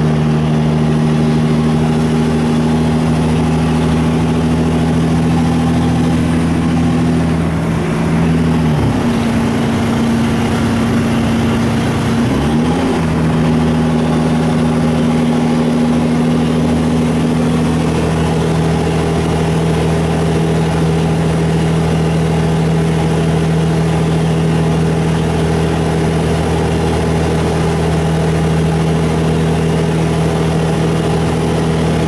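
Diesel engine and drivetrain of a LiAZ 6213.20 articulated city bus under way, heard from inside the passenger cabin as a steady, fairly loud hum. The pitch dips briefly and recovers twice, at about nine and at about twelve and a half seconds in.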